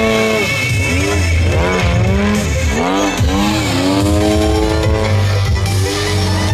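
Engine of a radio-controlled aerobatic airplane running loud, its pitch swinging up and down again and again as the throttle is worked through manoeuvres, then settling to a steady note near the end.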